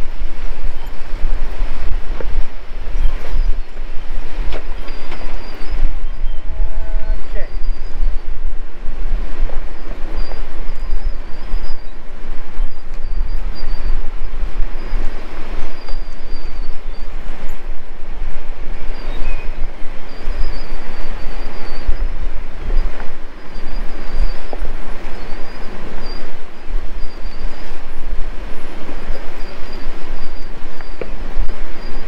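2022 Ford Ranger pickup crawling down a rough, rocky four-wheel-drive trail: a loud, steady rumble with continuous rattling and clatter from the truck jolting over rocks.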